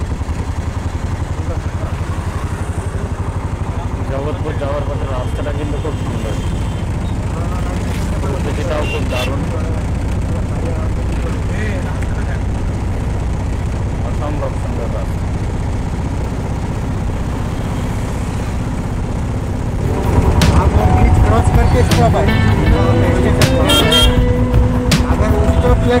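Auto-rickshaw engine running steadily on the move, a continuous low rumble with road noise. About twenty seconds in the sound turns louder and busier: street traffic with horns honking and voices.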